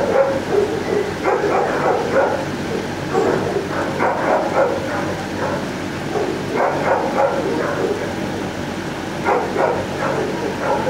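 Many dogs in a shelter kennel block barking over one another, a continuous din of overlapping barks and yips.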